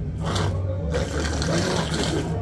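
A man's hoarse, breathy, strained voice answering with great difficulty, the speech of someone with throat cancer, more hiss and rasp than clear words.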